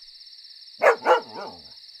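A cartoon dog's voice: two short barks a little under a second in, trailing off in a brief wavering sound, over steady cricket chirping.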